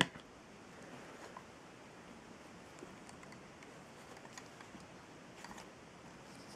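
Faint handling noise over quiet room tone: scattered small clicks and rustles as the LED light heads and their cables are moved about, with a short cluster of clicks near the end.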